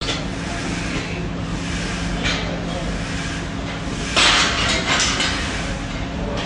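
Gym ambience: a steady hum under indistinct background voices, with a louder rushing sound about four seconds in.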